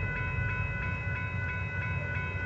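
Railroad crossing warning bell ringing steadily, about three strokes a second, over a low rumble.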